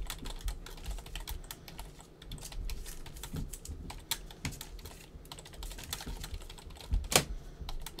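Computer keyboard typing: quick, irregular light key clicks, with one louder click about seven seconds in.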